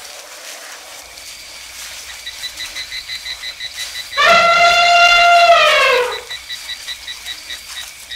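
Elephant trumpeting, standing in for a mammoth: one loud call about four seconds in, held steady for about two seconds, then falling in pitch as it ends. Faint, evenly repeating high chirps run underneath.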